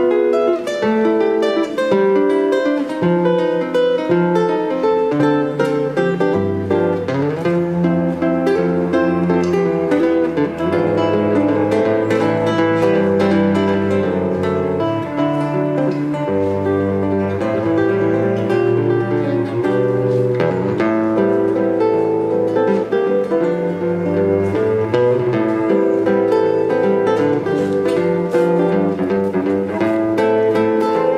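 Fingerstyle acoustic guitar and cello playing an instrumental duet arrangement. Guitar melody and chords sit over a cello bass line, which grows fuller about six seconds in.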